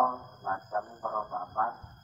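A distant public-address announcement from a mosque loudspeaker: a man's voice, faint and muffled. A thin, steady high whine runs underneath.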